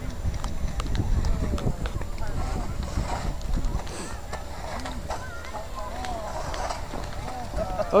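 Ice-chair sled being poled across river ice: the metal-tipped poles strike the ice in irregular sharp taps, over a low grating rumble from the steel runners. Several people are talking faintly in the background.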